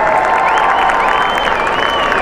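Arena crowd applauding and cheering steadily, with one high, drawn-out cheer wavering up and down over it.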